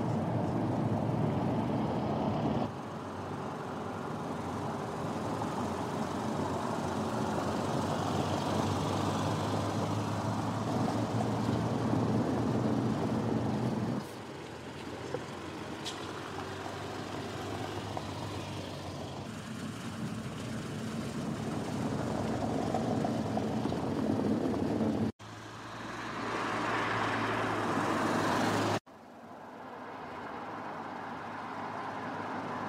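Skoda Karoq compact SUV driving, its engine hum and tyre noise on paving and asphalt. The sound changes abruptly at several cuts between shots, about 3, 14, 25 and 29 seconds in.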